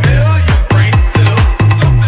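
Vietnamese nhạc sàn club remix: electronic dance music with a steady, heavy kick drum on the beat and a deep bass line.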